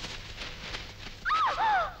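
High whimpering cries, two short arching notes that rise and fall, coming about a second in after faint rustling.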